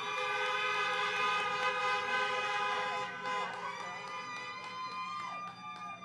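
Several car horns honking at once in different pitches, held for a few seconds and thinning out toward the end: an audience applauding a speech by honking.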